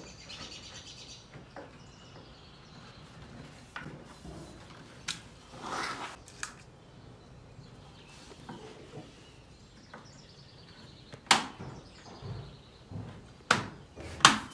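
Hand fitting of a plastic side skirt against a car's sill: scattered soft rustles and knocks, with two sharp knocks a couple of seconds apart near the end. Faint birdsong chirps underneath.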